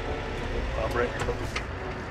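Tractor diesel engine running steadily in the cab as the tractor pulls away from a standstill in a high gear.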